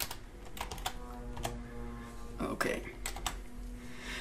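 Typing on a computer keyboard: a quick, irregular run of key clicks as a formula is entered.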